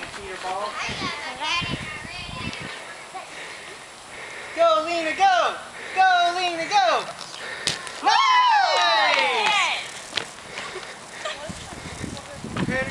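Excited, high-pitched voices of children and adults squealing and calling out during play. The loudest is a long, high shriek about eight seconds in.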